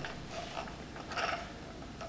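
Faint low mechanical noise from a Brother RH-9800 buttonhole sewing machine's mechanism as its pulley is turned by hand, with a brief rustle about a second in.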